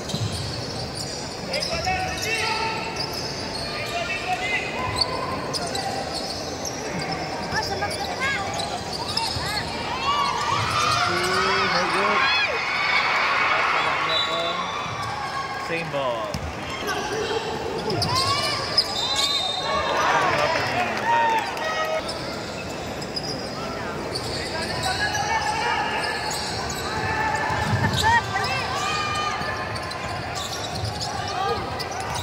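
Basketball game sounds on a hardwood court: the ball bouncing as it is dribbled, with many short squeaks of players' sneakers, under voices of players and spectators.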